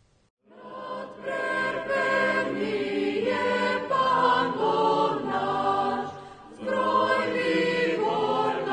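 A choir singing in slow, sustained chords, starting about half a second in, with a short dip between phrases around six seconds in.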